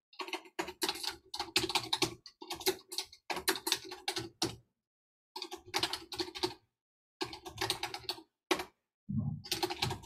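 Typing on a computer keyboard: rapid key clicks in about six bursts of one to two seconds, with short silent gaps between them.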